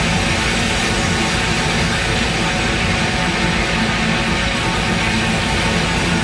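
Live hard rock band playing at full volume, led by a distorted electric guitar, with a steady dense sound throughout.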